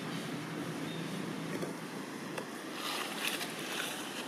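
Steady outdoor background noise, with a few faint rustles near the end.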